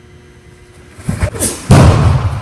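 A couple of soft knocks, then a loud thump near the end that echoes and fades slowly in a large hall.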